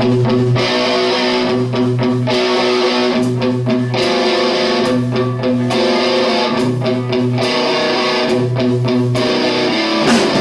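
A live rock band playing a repeating riff on a Stratocaster-style electric guitar and a bass guitar, with a low bass figure coming back about every second and a half.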